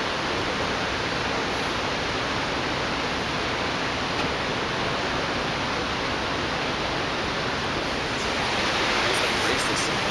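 Steady rush of water, slightly louder near the end.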